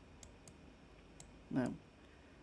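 A few faint, sharp computer mouse clicks spread over the first second or so.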